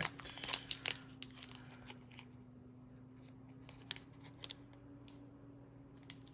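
Foil Pokémon booster pack wrapper being opened: a quick run of crinkly snaps and rips in the first two seconds, then only a few faint crackles.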